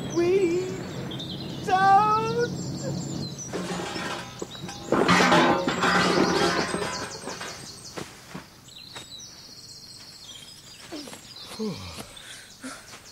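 Audio-drama sound effects over background music: rising cries in the first two seconds, a loud crash about five seconds in as the mine cart breaks out of the cave, then quieter birdsong near the end.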